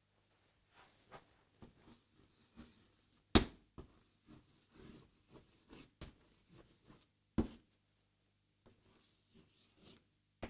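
Chalk writing on a blackboard: a string of faint short taps and scratchy strokes, with two sharper knocks about three and a half and seven and a half seconds in.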